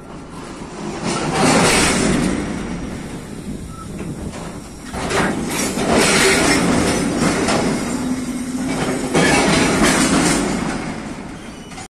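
Freight train of railway tank cars rolling past close by, steel wheels running on the rails. The noise swells and fades in three waves as the cars go by.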